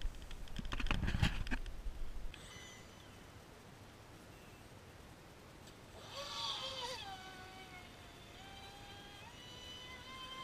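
A clatter of knocks and bumps in the first two seconds. From about six seconds in, the electric whine of the Feilun FT012's brushless motor driving the boat through water: it falls in pitch as the throttle changes, then holds a steadier, fainter tone and steps up again near the end.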